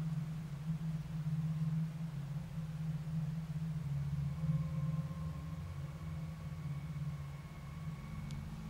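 Steady low hum over faint hiss, with a faint thin whine above it.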